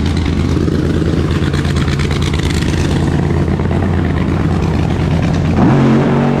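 Drag race car's engine running loud and steady with a rapid rattling beat, then a quick rev, rising in pitch, near the end.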